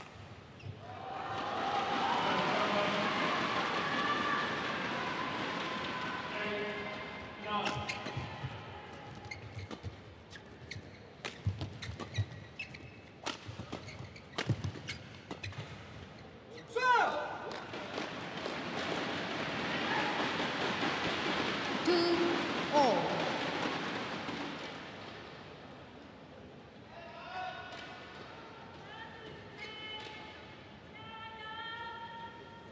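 Badminton rally: a quick series of sharp racket strikes on a shuttlecock, with crowd cheering and shouting in the arena before it and after it.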